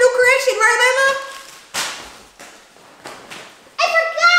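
A young person's voice for about the first second, held and gliding in pitch, then a few seconds of soft rustling as an apron is unfolded and shaken out.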